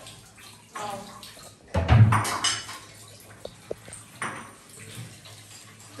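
Dishes and utensils being handled in a kitchen: a loud clatter with a dull knock about two seconds in, then a few light clinks, over water running at the sink.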